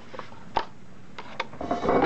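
A paper coffee cup being handled and set down on a desk and kitchen scale: a few light knocks, then a short rustling scrape near the end.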